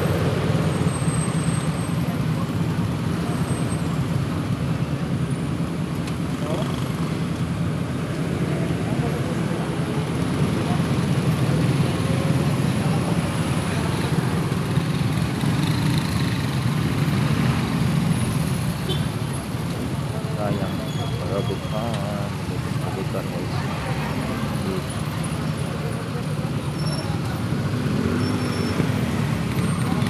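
Steady low rumble of motorcycle and car engines in slow, congested city traffic, heard from among the motorbikes.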